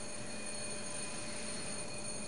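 A steady, faint hiss with a few faint steady hum tones and no distinct events.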